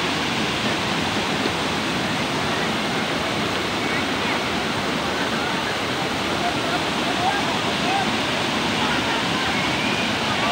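Shallow river water rushing over a rock shelf and small cascades, a steady, unbroken noise, with faint voices of people wading in it.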